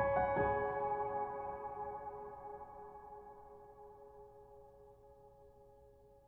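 Slow, gentle solo piano: a chord struck just after the start rings on and fades gradually until it is very faint near the end.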